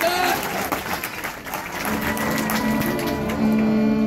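Crowd cheering and applause at a marching band field show, dying down, then about two seconds in the band comes in with held low notes that carry on.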